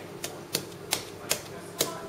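A series of five short, sharp clicks or taps, unevenly spaced about half a second apart.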